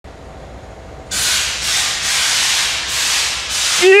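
Loud hiss of a pressurised spray, starting about a second in and pulsing in several bursts roughly half a second apart, as the transmission area under the car is cleaned. A man's voice briefly near the end.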